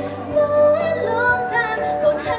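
A Thai pop song with a female lead vocal, sung into a handheld microphone over a backing track and played through PA loudspeakers.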